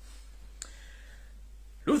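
A brief pause in a man's talk, with a steady low hum and a single sharp click a little over half a second in. His speech resumes near the end.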